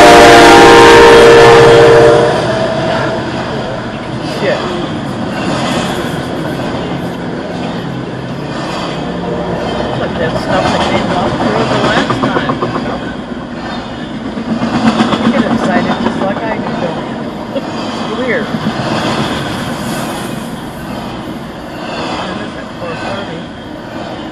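A Norfolk Southern freight locomotive's air horn sounds one loud chord of several notes, cutting off about two seconds in. It is followed by the steady rumble and clatter of a double-stack intermodal container train rolling past.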